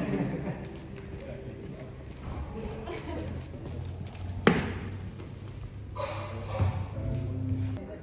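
Faint, indistinct voices over background music, with a low steady hum. One sharp click sounds a little past the middle.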